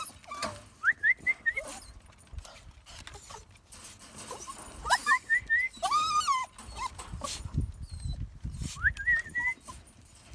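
Jack Russell terriers whining in short, high, rising cries that come in quick runs of three or four, with one longer wavering whine about six seconds in, and a few scattered knocks.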